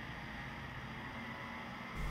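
Refuse collection truck's engine running, faint and steady, as the truck drives round a corner.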